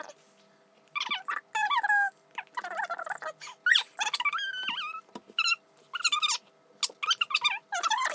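A baby babbling and squealing: short, high, wavering cries, with one sharp rising squeal about halfway through.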